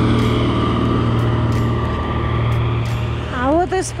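Diesel engine of a yellow wheel loader with a snow blade, running steadily as it drives along the road and moves away.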